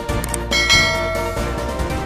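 A bright bell chime rings out about half a second in and fades over about a second, over steady background music: a notification-style sound effect.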